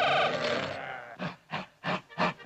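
A held musical note fades out in the first half second. From about a second in comes a string of short gruff bursts: the cartoon dragon's voice laughing and roaring.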